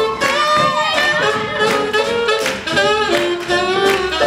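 Swing band playing an instrumental passage, saxophones carrying the melody over a steady beat.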